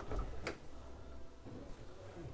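Stainless fridge-freezer door pulled open by its recessed handle: a light click about half a second in as it comes free, then a faint low hum.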